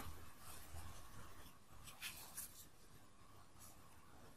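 Faint rustling and small scratchy clicks of a metal crochet hook drawing cotton yarn through stitches, a few soft scrapes in the first half and then almost nothing.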